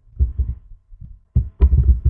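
Computer keyboard keys being typed, heard as dull thumping taps: a couple of single taps, then a quick run of several near the end, over a faint steady electrical hum.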